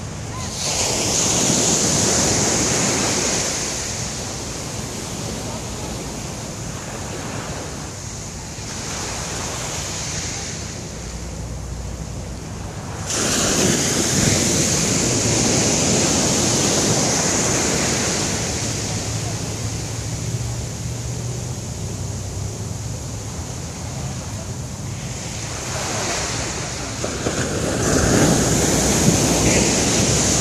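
Ocean surf breaking on a sandy beach. Three waves crash and wash up the shore: one shortly after the start, a louder one that starts suddenly a little before halfway, and another near the end, with a steady wash of water in between.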